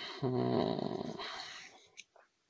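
A man's drawn-out hesitation sound, one held low 'eee' lasting over a second and fading out. A short click comes right at the end.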